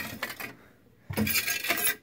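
A hand scraper scraping dried soil off the glass floor of an aquarium, a gritty rasp on glass. A short, faint stroke at the start is followed after a brief pause by a longer, louder scraping in the second half.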